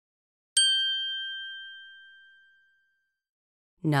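A single high bell-like ding, struck once about half a second in and ringing out over about two seconds. It is the chime that marks the pause between numbered items of a recorded listening exercise.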